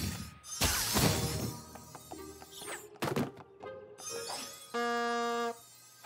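Cartoon sound effects over music: several short noisy whooshes as magic swirls, then a bulb horn honks once for under a second near the end.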